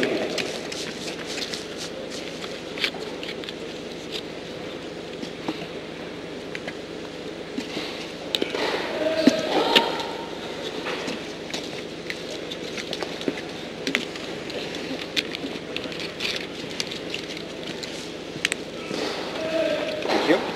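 Indoor tennis hall ambience during a break in play: a steady background hum with scattered light clicks and knocks, and brief voices about nine seconds in.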